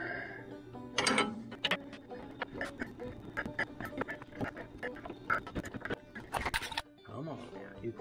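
Irregular clinks and knocks of metal hitch parts and tools being handled and fitted, with faint background music.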